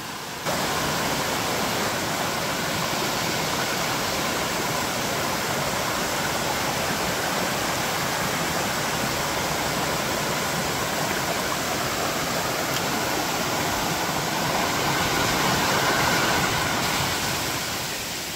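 Mountain stream pouring down a small rocky cascade into a pool: a steady rush of falling water that comes in abruptly about half a second in.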